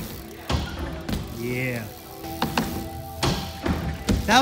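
A BMX bike knocking and thumping on skatepark ramps, several separate hits, with music playing in the background and a brief voice.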